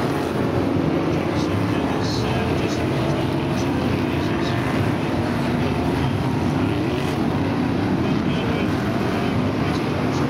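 BriSCA F1 stock cars' V8 engines running as a pack circles the shale oval, a loud, steady engine noise with no let-up.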